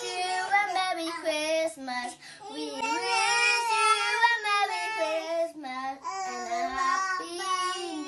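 A young girl singing into a toy microphone, holding high notes and sliding between them, with a brief break about two seconds in.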